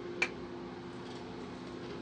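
Steady hum of kitchen equipment inside a food truck, with a single sharp click about a quarter second in.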